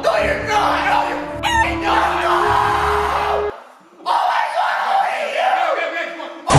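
Men shouting and yelling excitedly over background music with a steady bass line. The music cuts off suddenly about halfway through, and after a brief pause the shouting goes on without it.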